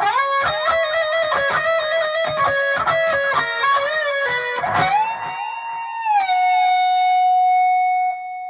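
Electric guitar lead played alone: fast trills and picked notes high on the neck for about five seconds, then a wide bend up and back down, ending on a long sustained note.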